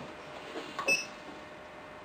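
The push-knob on the HLLY TX-30S FM transmitter's front panel is pressed, giving a short click and a brief high beep about a second in as the unit enters the temperature setting. A faint steady hum runs underneath.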